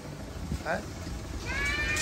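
A man's voice: a short word about a second in, then a drawn-out, rising syllable near the end, over faint background noise.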